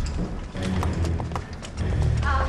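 Boot footsteps of several people clacking irregularly on a stone floor, over background music with a low pulsing bass.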